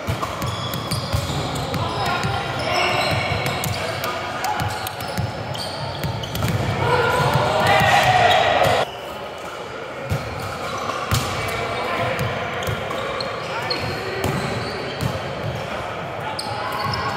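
Volleyball rally in a large gym: the ball is struck and bounces on the hardwood floor in sharp knocks while players shout and call to each other, all echoing in the hall. The loudest part is a burst of shouting about seven to nine seconds in, which cuts off suddenly.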